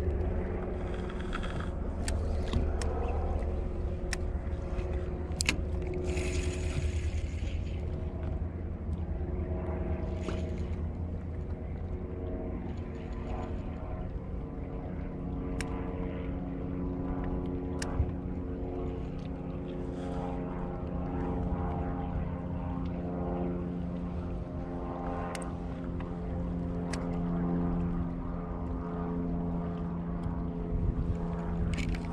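A boat motor running steadily, a low rumble with a few steady humming tones, with several short sharp clicks over it.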